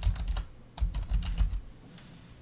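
Typing on a computer keyboard: a quick, irregular run of key clicks, each with a dull thump, as a short name is typed in.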